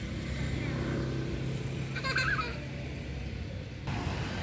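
A steady low engine hum, with a short, high, wavering call about two seconds in.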